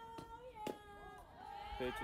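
Long, drawn-out, high-pitched calls from girls' voices on a softball field, with a sharp knock about two-thirds of a second in.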